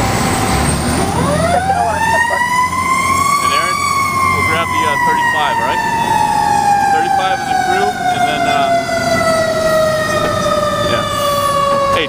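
Fire truck siren rising in pitch over about three seconds, then falling slowly and steadily for the rest of the time, over the rumble of the truck.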